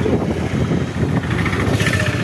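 Street traffic: the engines of passing vehicles, a pickup truck close by and a motorcycle approaching, making steady engine noise.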